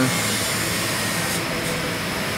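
Steady background noise with no distinct events, an even hiss spread across all pitches.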